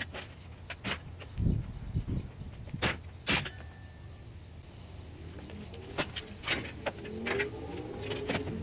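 Tools being loaded into an enclosed cargo trailer: irregular knocks and clanks of handles and equipment against the trailer, over a low steady rumble.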